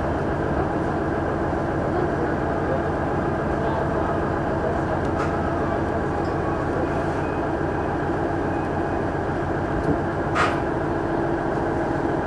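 Steady running drone of a KiHa 110 series diesel railcar heard from inside the cabin, the diesel engine and wheels going at low speed. A sharp click sounds about ten seconds in.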